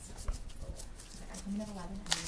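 Faint rubbing and light ticks of an alcohol swab being wiped over a silicone practice-skin pad, with a soft murmured voice near the end.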